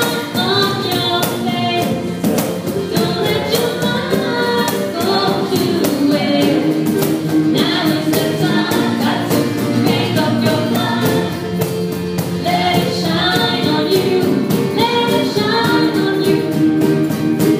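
Live band playing a soul-pop song: a woman sings lead into a microphone over backing vocals, with acoustic and electric guitars and a steady cajón beat.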